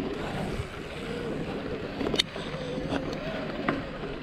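Mountain bike rolling along a dirt trail, with wind rushing over the camera microphone. Two sharp knocks from the bike going over bumps, one about halfway through and one near the end.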